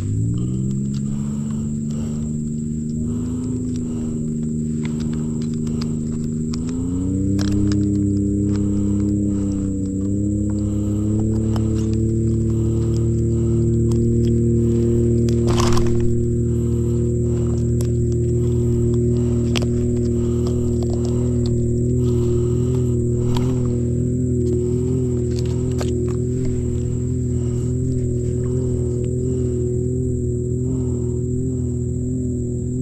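A steady motor drone that rises in pitch right at the start and again about seven seconds in, then holds level, with scattered light clicks over it.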